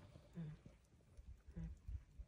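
Faint sounds of a sheep and goat flock at night: a few soft, short bleats and light knocks of hooves as the animals shift and move.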